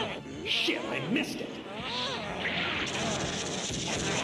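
Cartoon fight soundtrack: wordless vocal cries rising and falling in pitch, with short hissing sound effects over background music.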